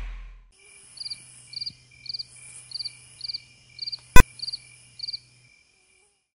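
Crickets chirping, a short chirp about every 0.6 seconds, over a faint low hum, after the tail of the intro sound fades out. A single very loud, sharp click cuts in about four seconds in.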